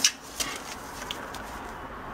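Handling noise: a sharp click right at the start, a lighter click about half a second in, then a few faint ticks over steady background hiss as a gloved hand moves things on the bench.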